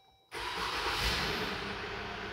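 A 2020 Jeep Wrangler's 3.6-litre Pentastar V6 starting from inside the cabin: it catches quickly, rises to a brief peak about a second in and eases toward idle, with a steady hiss of the cabin fan alongside.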